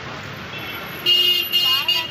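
A vehicle horn honking twice in quick succession about a second in, the first honk about half a second long and the second a little shorter, over steady street traffic noise.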